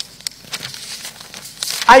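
Sheets of paper rustling and crinkling as they are handled, with a few small clicks, before a man's voice comes in near the end.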